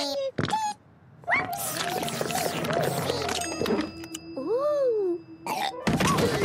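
Cartoon soundtrack: the little Neep characters' high, squeaky nonsense vocalizing in short gliding and swooping calls, over light music, with a few sharp clicks and knocks.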